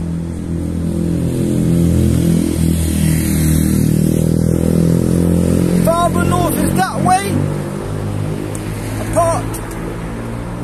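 Road traffic: a car engine running close by, loudest from about two to six seconds in, then easing back.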